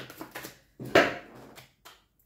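Tarot cards being shuffled overhand by hand: a quick series of short slaps and rustles as the cards drop from one hand into the other, the loudest about a second in.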